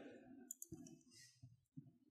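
Near silence with a few faint, short clicks in the first second and a half.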